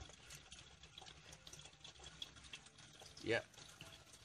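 Faint, steady bubbling and trickling of aquarium water with many small crackling ticks.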